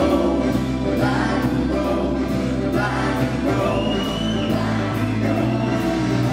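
Live electro-pop band music with singing, played loud through a concert PA, with sustained bass and keyboard notes.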